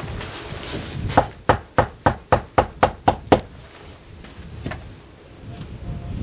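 Knuckles knocking on a front door: a quick run of about ten knocks starting about a second in and lasting some two seconds, with one fainter knock later.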